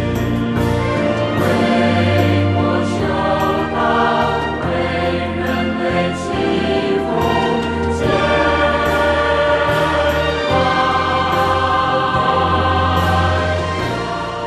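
Closing theme music: a choir singing over sustained instrumental accompaniment with a deep held bass.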